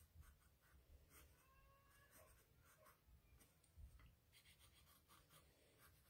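Very faint scratching of a graphite pencil drawing short lines on thick watercolor paper, in a series of light strokes.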